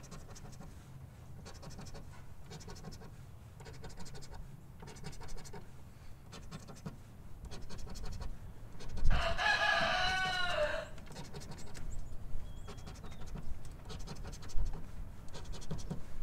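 A coin scraping the latex coating off a paper scratch-off lottery ticket on a wooden table, in short repeated strokes. A little past the middle, a loud, wavering animal call lasts about two seconds, dropping slightly in pitch at the end.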